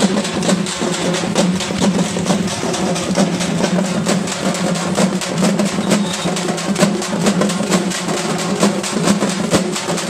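A troupe of marching drummers beating slung cylindrical drums with sticks, a fast, dense, unbroken beat.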